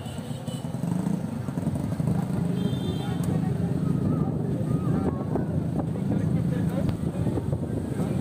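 Chatter of voices over a motor vehicle engine running nearby, with a few short knocks in the second half.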